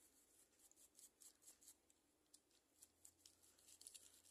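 Very faint, quick scratchy strokes of a small bristle brush scrubbing dust off a diecast toy car, irregular and many to the second.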